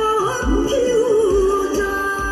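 A woman singing a Korean song live into a microphone over musical accompaniment with a steady bass beat, holding a long note with vibrato from about half a second in.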